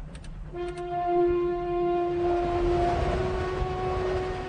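A long, steady horn-like note with overtones from the cartoon's soundtrack. It comes in about half a second in and holds at one pitch over a low rumble.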